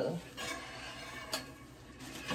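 A single light, sharp click, like a small hard object tapped or set down, a little past halfway, against faint handling and room sound.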